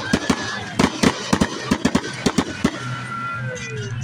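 Aerial fireworks going off: a rapid string of more than a dozen sharp bangs over the first two and a half seconds or so, then quieter.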